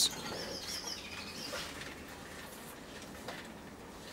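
Quiet room tone with a faint, high, warbling chirp in the first second.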